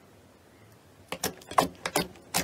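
Hand pressing into a dome of glittery slime: about a second of quiet, then a quick run of about half a dozen sharp crackling pops as the slime is squeezed.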